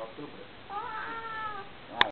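A single drawn-out, high-pitched vocal call, about a second long, rising briefly and then gliding slowly down. A sharp click comes at the very end.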